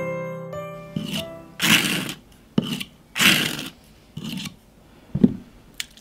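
Small metal palette knife scraping thick glitter paste across a plastic stencil on card, in about six short separate strokes. Bright, jingly music ends about a second in.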